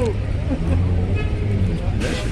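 Low, steady rumble of street traffic with people talking faintly in the background.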